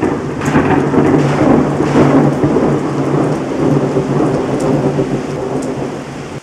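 Thunderstorm sound effect: a long, loud thunder rumble over steady rain, with sharp cracks about half a second and two seconds in.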